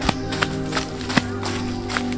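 Background music with long held tones, over a run of short crunching steps on dry leaf litter, about three a second.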